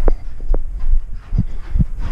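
Footsteps hurrying along a carpeted corridor, picked up as dull, irregular thumps through the hand-held camera.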